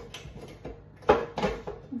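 Granulated sugar poured from a glass measuring jug into a stainless-steel mixing bowl, with light clicks and two sharp knocks of kitchenware, the louder one about a second in.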